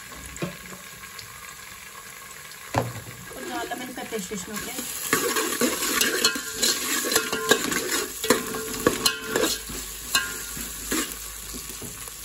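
Sliced onions, green chillies and bay leaves sizzling in hot oil in an aluminium pot. A steel ladle stirs them, scraping and clicking against the pot. There is a single knock a little before three seconds, and the stirring grows louder and busier from about five seconds in.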